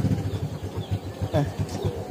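A small engine running steadily in the background, a low even pulse about six or seven times a second.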